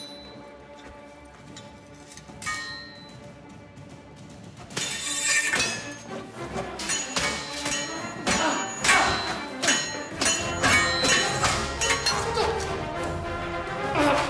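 Swords clashing, metal blades striking with a ringing clang over orchestral film music: a few strikes in the first seconds, then rapid repeated clashes from about five seconds in.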